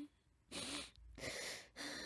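A boy crying: three ragged, gasping sobbing breaths in quick succession.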